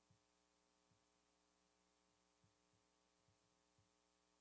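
Near silence: a faint steady electrical hum, with a few soft low thumps at irregular intervals.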